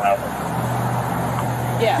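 Road traffic noise from vehicles at a busy intersection, an even rush with a steady low hum.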